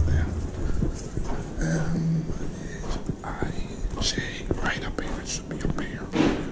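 Footsteps walking along a carpeted hallway, with quiet, indistinct voice sounds too faint to make out as words.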